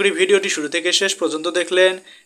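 Speech only: a narrator reading aloud in Bengali, without a pause.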